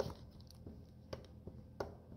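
Four faint, short clicks about half a second apart, the first the loudest, as a loose ATV rear drive shaft is worked in and out by hand at the transmission. The play comes from a loose bolt at the transmission end, which puts the U-joint at risk.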